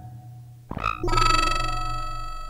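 Experimental electronic synthesizer music. A low buzzing drone is followed, about a second in, by a sharp attack into a bright ringing tone with many overtones that slowly fades.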